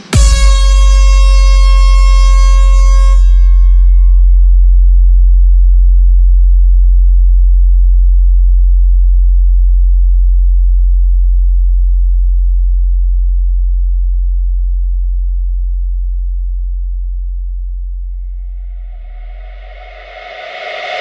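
A single long, very deep synthesised bass tone from a DJ sound-check track, the bass-test drop of such competition demos. It starts with a bright, buzzy attack whose upper overtones die away over the first few seconds, leaving a low bass note that fades slowly; near the end a noisy swell builds up.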